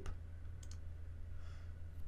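Computer mouse clicking, two quick clicks close together a little over half a second in, over a steady low hum.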